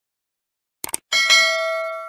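A quick double mouse click, then a bright bell ding that rings for about a second and fades: the stock sound effect of a subscribe-button animation with its notification bell.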